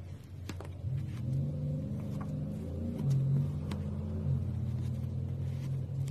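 Metal palette knife working thick paint, giving a few sharp scattered clicks and scrapes, over a steady low rumble that shifts in pitch a few times.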